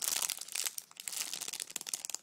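Plastic packaging crinkling and crackling as a foam squishy inside it is squeezed by hand: a dense run of sharp crackles.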